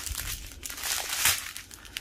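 Small plastic bags of diamond-painting drills crinkling as they are handled and sorted, in irregular crackles.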